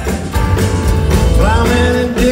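A live rock band plays loudly through a concert PA, heard from the audience: drum kit, bass and acoustic and electric guitars, with held notes and a bending melody line over them in the second half.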